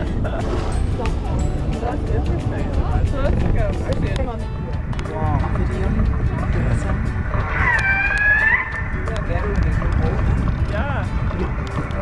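Orcas (killer whales) calling, a run of short whistled and pulsed calls that swoop up and down in pitch over a steady low rumble from the boat. The loudest is a high, arching call about two-thirds of the way in.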